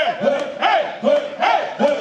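A crowd of voices shouting together in rhythm, repeated calls about two or three times a second, led by singers on microphones.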